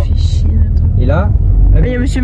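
Low, steady rumble of a car's engine and road noise heard from inside the cabin while driving, swelling slightly near the end. Brief voices come in about a second in.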